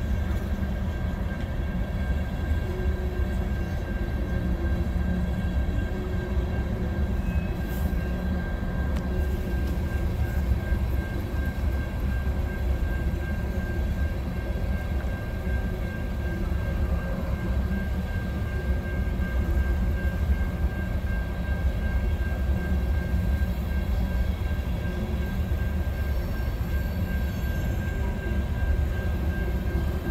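Empty covered hopper cars of a long freight train rolling past, a steady rumble of steel wheels on rail with a faint steady high-pitched tone running through it.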